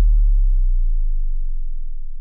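The closing sub-bass note of a melodic dubstep track: a deep low synth tone fading out steadily, with higher overtones gliding downward in pitch as it dies away.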